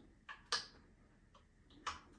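A few short, sharp clicks and knocks of metal hardware: an AR rifle being seated and locked into a tripod ball head's clamp. The two loudest come about half a second in and near the end.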